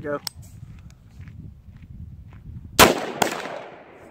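AR-15-style rifle firing: one sharp shot about three-quarters of the way in, the loudest thing here, with a second crack close behind it and a long echoing tail.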